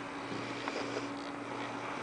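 Steady low electrical hum of running equipment, with a faint click about two-thirds of a second in; the robot arm has not yet begun to move.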